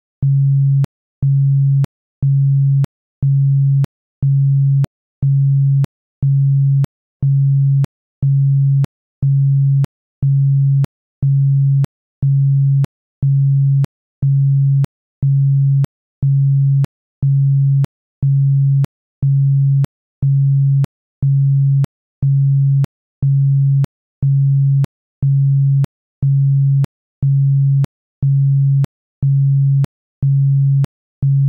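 A 138 Hz isochronic tone: one low, pure sine tone pulsing on and off at an even rate, about one and a half pulses a second, with a faint click as each pulse starts and stops.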